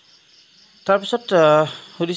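A man's voice: a couple of short sounds, then one drawn-out syllable starting about a second in. Steady, high-pitched insect chirring runs in the background.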